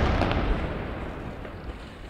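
Loud rumble of an airstrike explosion dying away steadily over about two seconds, echoing among city buildings after the blast.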